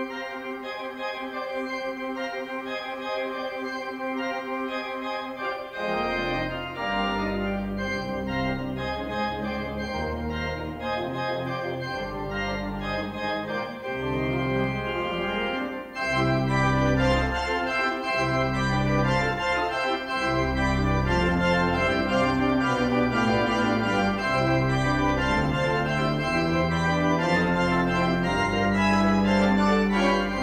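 Church pipe organ playing a piece, starting on the manuals alone with sustained chords. Deep pedal bass notes come in about six seconds in, and the sound grows fuller and louder with added high stops from about sixteen seconds.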